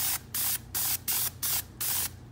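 Cheap external-mix airbrush, fed from a can of propellant, spraying paint in short hissing bursts, about three a second, as the trigger is pulsed.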